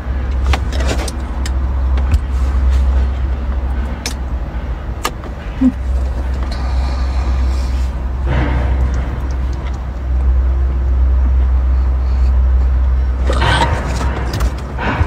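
Slurping and chewing on a raw geoduck siphon, with short wet clicks and a few louder bursts of slurping about eight seconds in and near the end, over a steady low rumble.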